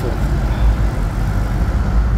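Steady low rumble of an idling diesel tractor-trailer rig, with uneven swells in the deep bass.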